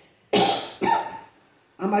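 A man coughing twice into his fist, two sharp coughs about half a second apart, the first the louder.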